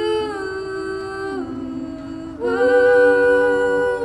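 Several voices humming sustained chords in close harmony, a cappella. The chord steps down about a second and a half in and rises again about two and a half seconds in.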